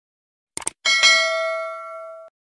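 Subscribe-button sound effect: a quick double mouse click, then a notification bell that strikes and rings with a few steady tones, fading away.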